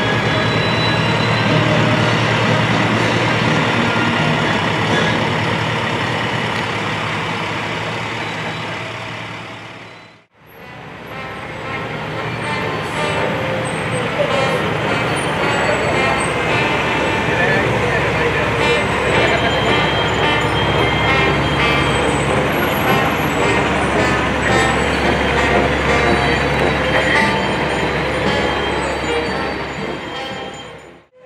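Emergency vehicles, an ambulance and then a fire rescue truck, passing slowly with their engines running. The sound drops out briefly about ten seconds in.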